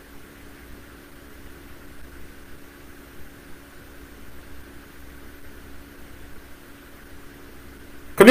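Steady background hiss with a faint low hum: room tone in a pause between speech.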